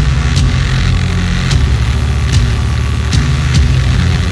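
Heavy progressive rock with a dense, droning low end and a sharp hit recurring a little under once a second.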